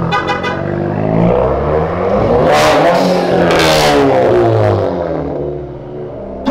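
A car engine revving hard as a car accelerates past, its pitch climbing with two loud surges in the middle, then falling away. A short, fast rattle comes right at the start.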